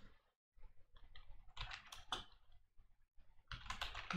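Computer keyboard typing: irregular, faint keystrokes that come quicker and louder near the end.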